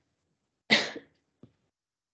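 A single cough about two-thirds of a second in: it starts sharply and fades within about a third of a second. A faint, brief sound follows about half a second later.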